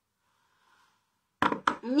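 Near silence, then about one and a half seconds in, a few quick sharp knocks, and a woman starts speaking.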